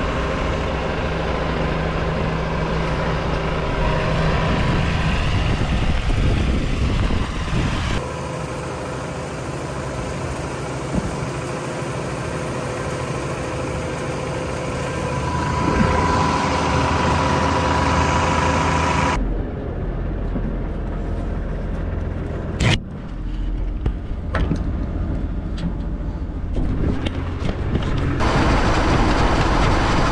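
Farm machinery engine running steadily while fertiliser is spread, its sound changing abruptly several times, with a single sharp knock about two-thirds of the way through.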